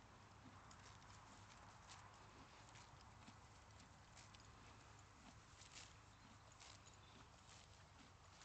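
Near silence, with faint, irregular soft ticks and rustles from horses moving and grazing on grass.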